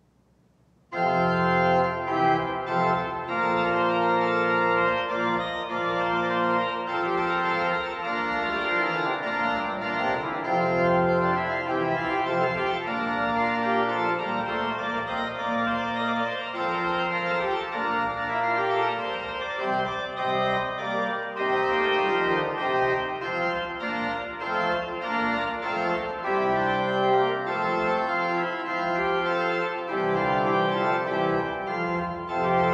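Pipe organ playing an anonymous Renaissance branle, a dance, in full chords of sustained notes over a steady rhythm; it starts suddenly about a second in.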